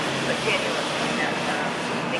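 Distant Mercedes-Benz Sprinter van with its OM642 V6 turbodiesel accelerating, heard faintly under a steady wash of outdoor noise.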